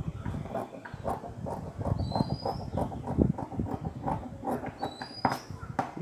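Scissors snipping through blouse fabric in a run of short, uneven cuts, about two or three a second.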